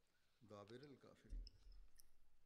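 Near silence, with a man's voice heard faintly for about half a second and a couple of small clicks just after.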